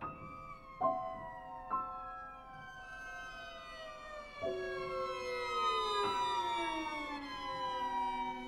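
Violin, cello and piano trio playing contemporary classical music. The strings slide slowly downward in pitch in long, overlapping glides, while the piano strikes sharp notes a few times, about five in all.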